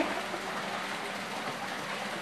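Thick homemade lye soap batter being stirred with a long stick in a plastic bucket, a steady soft swishing as the mix nears trace.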